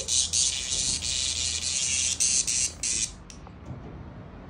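A cicada's loud, harsh distress buzz in stuttering bursts as a cat bats at it, cutting off about three seconds in.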